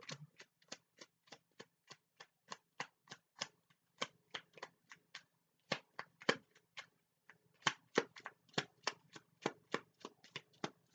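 A tarot deck being shuffled by hand: a quick run of crisp card snaps, about three or four a second, with a short break around the middle and another a little later.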